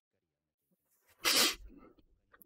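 A man's single sneeze, one short burst a little over a second in, with a faint breath after it.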